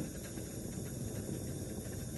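Steady hiss of a gas Bunsen burner flame heating a test tube of boiling water.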